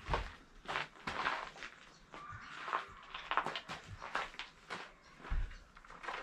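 Irregular footsteps on a dirt and gravel floor, with rustling and knocking from handling a garden hose and small fittings; a dull thump near the start and another near the end.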